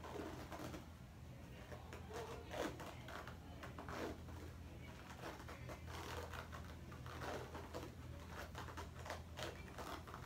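Green cohesive vet wrap being unrolled and wound around a dog's bandaged foreleg, a run of short crackles and rustles, over a steady low room hum.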